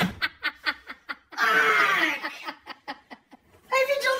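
A man laughing hard in runs of short rapid bursts, with a longer strained stretch of laughter in between and a brief lull before he starts talking near the end.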